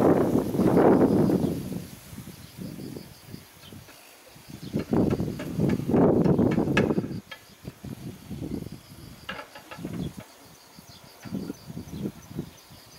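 An insect buzzing close to the microphone, swelling loud twice, at the start and again about five seconds in, with a few faint knocks in between.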